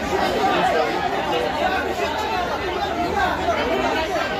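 A crowd of many people talking at once, a steady babble of overlapping voices.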